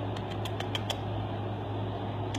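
Steady low hum and hiss of room air handling, with a quick run of about six light clicks in the first second.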